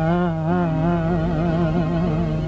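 A male voice in an old Tamil film song holds one long note with a wavering vibrato over a low, steady accompaniment drone.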